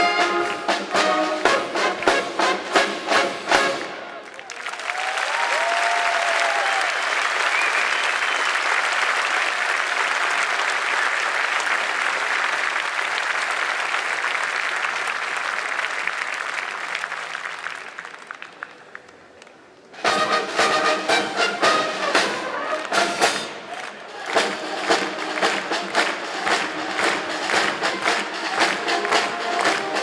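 A brass band ends a piece, and the audience applauds for about fourteen seconds, the applause fading away. About two-thirds of the way in, the band strikes up again with brass and drums on a steady beat.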